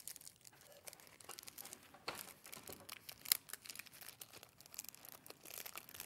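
Faint rustling of cotton fabric pieces being handled and folded together, with scattered small clicks and one sharper click about three seconds in.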